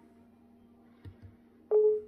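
A short, loud electronic beep on one steady tone near the end, preceded about a second in by two soft knocks, over a faint steady hum.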